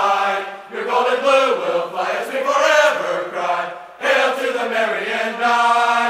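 A group of voices singing a college spirit song together in four sung phrases, with long held notes.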